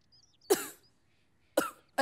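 Two short, sharp coughs from a woman, about a second apart, the first the louder, with faint bird chirps behind.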